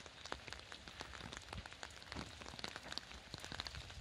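Light rain falling, a faint steady hiss with many irregular drops ticking on surfaces.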